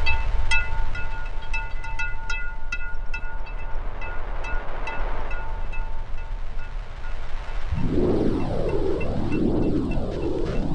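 Live improvised electronic music from modular synthesizer, turntables and electronics. A run of short pitched pings repeats several times a second over a low rumble, thinning out and fading by about seven seconds. Near the end a loud noisy swell comes in, its pitch sweeping up and down about once a second.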